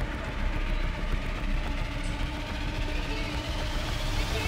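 Steady outdoor background noise with a low rumble and no clear events, the kind left by wind, rain or distant traffic.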